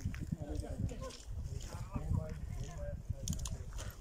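Indistinct voices of people talking in the background, over low, uneven buffeting noise on the microphone, with a few crisp clicks near the end.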